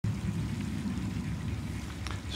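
Steady low rumbling outdoor background noise with no distinct events.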